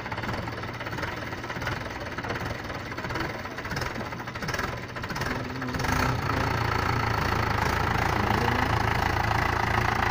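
Mahindra 575 DI tractor's diesel engine idling, then revving up and running harder about six seconds in as the bogged-down tractor is driven to pull itself out of the mud.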